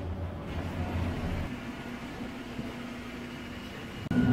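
Steady mechanical hum of airport machinery heard from inside a jet bridge. A low drone gives way about one and a half seconds in to a somewhat higher steady tone.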